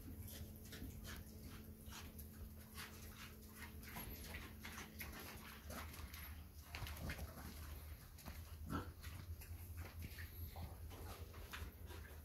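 Faint animal vocal sounds among many small clicks and rustles.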